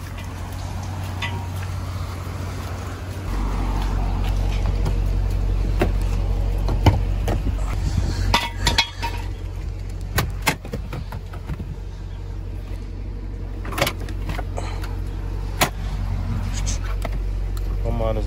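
Scattered clicks and knocks of hands handling things in a car interior, over a steady low rumble that grows deeper and louder about three seconds in.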